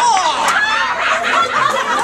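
Several teenagers laughing, their voices overlapping, in reaction to the burn of a spoonful of wasabi they have just eaten.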